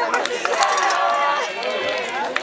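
Several voices of football players and onlookers shouting and calling over one another, with one drawn-out shout held for about half a second shortly after the start, amid a few short sharp clicks.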